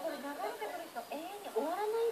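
A domestic cat meowing repeatedly, a series of rising-and-falling calls over a background of voices.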